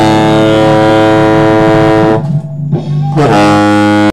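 Tenor saxophone holding one long note for about two seconds, then, after a brief break, starting another held note, over a backing track with a steady bass underneath.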